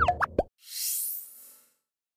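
Electronic end-card sound effects: a quick cluster of plopping blips in the first half second, then an airy rising whoosh that fades out.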